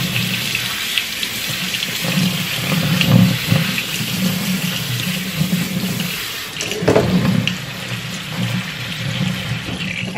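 Kitchen faucet's pull-down sprayer running a steady stream of cold water onto rice in a fine-mesh strainer, the water pouring through into a stainless steel sink: rinsing the starch off the rice.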